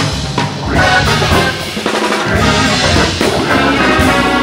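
Live rock ensemble playing an instrumental: saxophones, trumpet and trombone over electric guitars, bass and drum kit, with marimbas struck with mallets.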